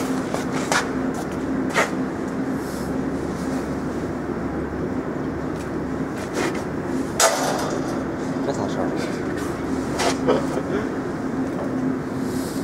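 Wire mesh welding machine running, with a steady hum as welded wire mesh winds onto its steel roller. A few sharp metallic clicks come through, the loudest about seven seconds in.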